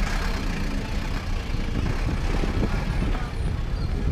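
Passenger bus engine running close by in street traffic, a steady low drone.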